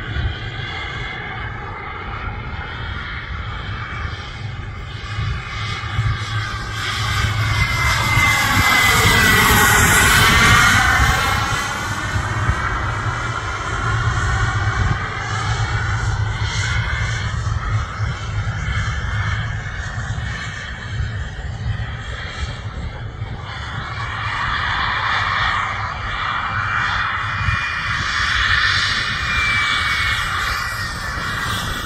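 Radio-controlled F-15 Eagle model jet flying, its engine whine continuous. It is loudest about ten seconds in as it passes, the whine sweeping in pitch, and it swells again near the end as it comes round on approach.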